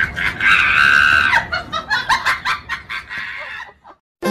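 A high-pitched scream held for about a second, followed by quick laughter that fades and cuts off near the end.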